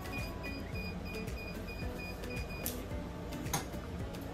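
Mug heat press timer beeping: a rapid run of short, high, evenly spaced beeps that stops about two-thirds of the way through, signalling that the pressing cycle is finished. A single click follows near the end.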